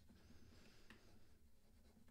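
Near silence, with faint scratching and light taps of a stylus writing on a pen tablet.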